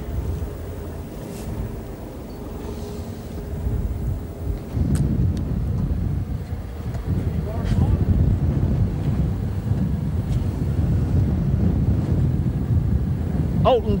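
Wind buffeting the microphone on an open boat deck at sea: a heavy low rumble that grows louder about five seconds in. A faint steady hum lies under it for the first few seconds.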